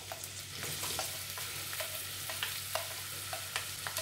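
Chopped onions landing in hot oil in a stainless steel pan, sizzling steadily, with scattered light clicks as the pieces are pushed off the plate with a spatula.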